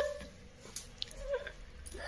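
Mostly quiet. A toddler's high-pitched babbling trails off at the start, and a faint short sound from his voice comes a little over a second in.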